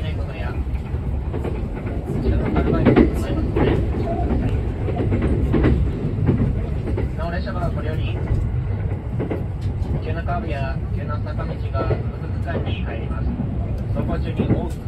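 Running noise inside an E353-series limited express train: a steady low rumble with the clack of the wheels over rail joints. A conductor's announcement plays over the train's speakers in the second half.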